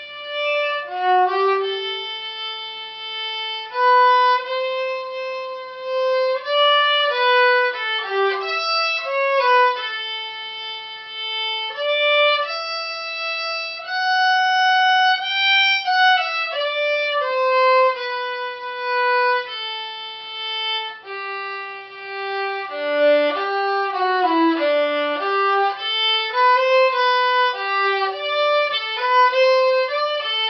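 Solo fractional-size violin, bowed, playing an unaccompanied melody: the Violin 1 part of a string orchestra piece. The line mixes held notes with quicker runs, rising to a long high note about halfway through and dipping lower in faster notes later on.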